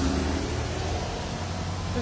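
A steady low mechanical rumble of a running motor or engine, with a faint tone that fades away within the first half second.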